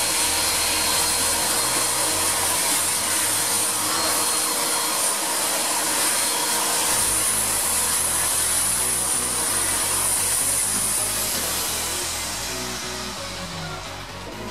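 Vacuum cleaner running steadily as its hose nozzle is worked over the tumble dryer's front vent grille, dying away near the end.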